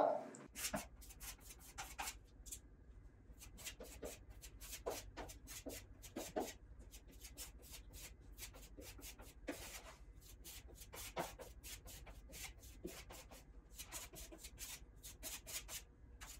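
Putty knife scraping spackle into nail holes in drywall: faint short scrapes and taps, one after another, as each hole is filled and smoothed. A faint low hum runs underneath.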